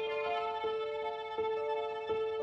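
Sampled solo violin from the VSL Synchron-ized Solo Strings library playing a tremolo passage that alternates between regular, sul tasto and sul ponticello tremolo. The notes change about every three quarters of a second.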